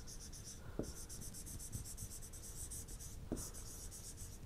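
Faint scratching of a stylus writing on a pen tablet, with a couple of light taps.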